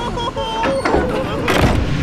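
Animated characters' voices crying out over background music, then a loud burst of noise about one and a half seconds in as the scene ends.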